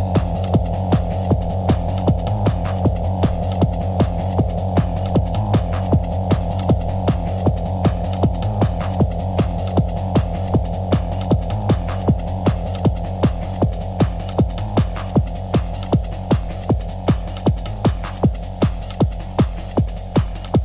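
Hard trance music: a steady four-on-the-floor kick drum at a little over two beats a second over a sustained low bass drone. A higher melodic line drops out right at the start, leaving the pulse and bass.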